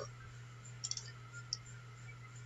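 A few quiet computer mouse clicks: a quick cluster about a second in and a single click about half a second later, over a faint steady low hum.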